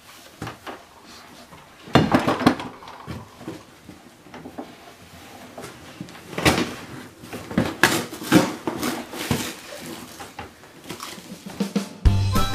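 Cardboard box scraping, crumpling and knocking as a grown man squeezes himself into it, with bursts of irregular knocks about two seconds in and again from about six to nine seconds.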